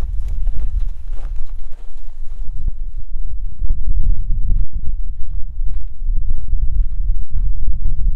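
Footsteps crunching on packed snow, irregular crunches close to the microphone, over a loud steady low rumble.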